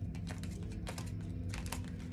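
Oracle cards being thumbed through one after another, a quick irregular run of sharp card clicks over a steady low hum.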